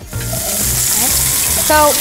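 Duck breast sizzling as it is laid skin side down in a hot stainless steel skillet. The hiss starts suddenly as the skin touches the pan and then holds steady.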